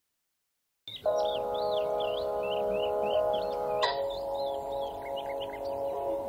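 Silence for about a second, then slow ambient music of long sustained chords, which shift about four seconds in, with birds singing over it in quick rising and falling notes.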